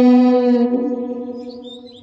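A woman's unaccompanied singing voice holds one long note at the end of a line of a folk song. The note stays steady in pitch and slowly fades away toward the end.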